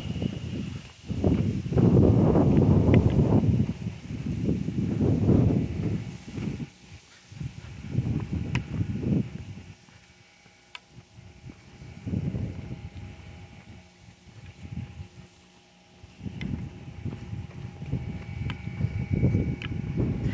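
Wind buffeting a phone microphone in irregular gusts of low rumble, dropping away briefly around the middle, with a faint steady hum underneath.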